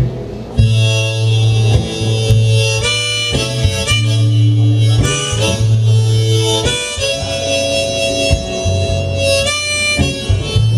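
Harmonica played from a neck rack over a strummed acoustic guitar. It holds chords that change every second or so, over a steady low guitar bass.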